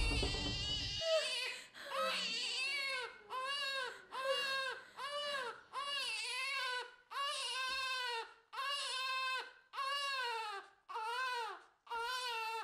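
A newborn baby crying in short repeated wails, about one a second, each rising and falling in pitch with a brief gap between. A louder low sound fades out in the first second.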